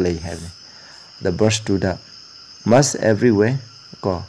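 A man speaking Manipuri in three short phrases with pauses between them, over a steady, high-pitched background tone.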